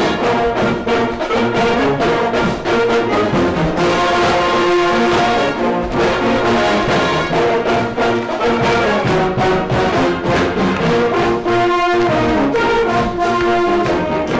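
A high-school marching band playing a brass-heavy tune at close range, with saxophones, mellophones and sousaphone over a steady beat. The recording is loud enough to distort in places.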